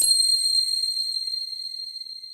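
A single high, bell-like chime that swells in just before it strikes, then rings on and fades slowly over several seconds.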